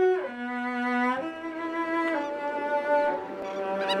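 Background music: a slow melody of long held notes on a bowed string instrument, sliding down in pitch between the first two notes.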